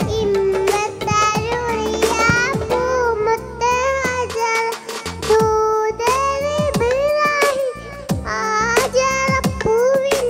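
A young girl singing a Mappila song into a headset microphone, holding wavering notes over a music accompaniment with regular drum strokes.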